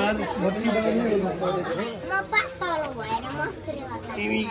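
Several people talking over one another: indistinct group chatter.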